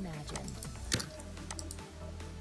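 Computer keyboard and mouse clicks, a handful of sharp taps with the loudest about a second in, over quiet background music and a low steady hum.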